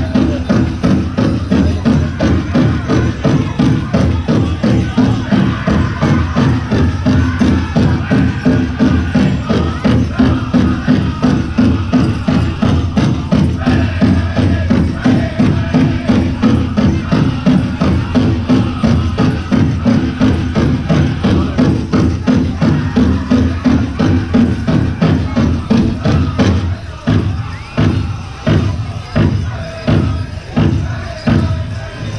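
Powwow drum group singing over a steady, even drum beat. Near the end the sound thins out to spaced drum beats.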